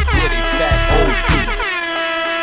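DJ air-horn sound effect blasting over a hip-hop beat, its tones sliding down in pitch; about one and a half seconds in the beat's bass drops out and the horn rings on alone, setting up a rewind of the track.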